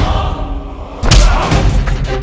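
Two heavy thuds of a staged blow: a short one at the start and a louder one about a second in that rings on, over dramatic background music.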